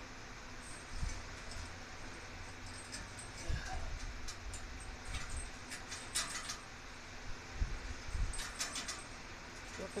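Hands handling a garage door extension spring, its pulley and safety cable: scattered light metallic clinks and rattles, with a few soft low thumps.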